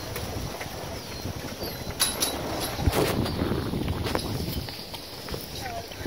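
Horses moving about a dirt corral: soft hoof steps and a few short knocks over outdoor background noise.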